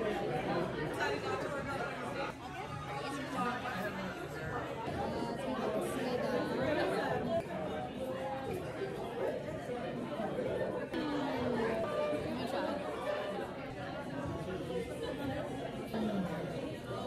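Steady chatter of many diners talking at once in a busy restaurant, no one voice standing out.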